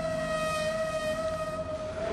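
A woman holding one long, high sung 'Aaa' as she breathes out, a toning exhale in a breathing exercise. The note sags slightly in pitch as it goes on.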